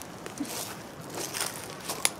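Footsteps on dry leaf litter: a few irregular crunches and rustles.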